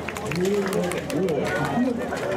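People talking close to the microphone, a casual conversation in Japanese.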